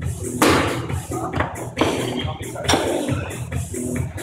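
Background music with a steady beat, over which come several sharp knocks and clatters as a loaded barbell is brought down from overhead after a jerk. The loudest knock is about half a second in, with smaller ones near one and a half, two and three seconds in.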